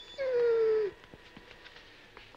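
A dog giving a single whine, one call that falls slightly in pitch and lasts under a second, starting a moment in.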